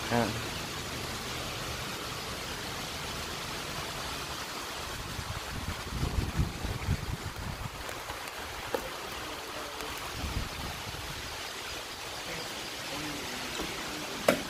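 Steady background hiss, with low rumbles and a single click from a phone being handled and moved about.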